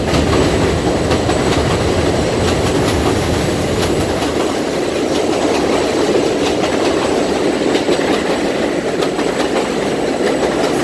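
Elevated city train passing close by: a loud, steady rumble of the wheels on the rails with rapid clicking over the rail joints. The deepest part of the rumble fades away about halfway through.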